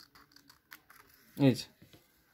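Scissors snipping through a sheet of paper, a quick run of small clicks, with a short spoken word about one and a half seconds in.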